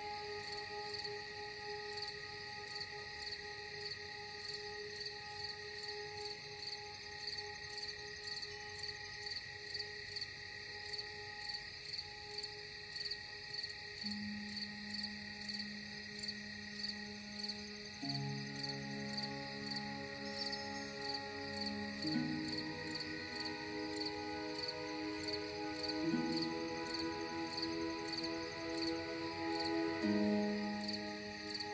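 Steady, rhythmic high-pitched chirping of crickets throughout. From about halfway, soft sustained ambient music chords join in, moving to a new chord roughly every four seconds.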